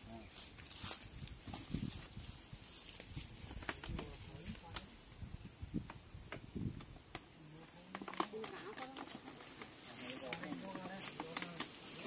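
People talking faintly, with scattered sharp clicks and crackles from a plastic bottle being handled on dry leaf litter.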